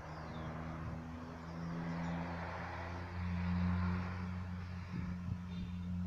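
A motor vehicle's engine passing, a steady low hum that grows louder about three seconds in and then eases.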